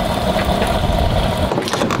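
Fuel pump nozzle dispensing fuel into a van's tank: a steady rush of flowing fuel with a low rumble that drops away near the end.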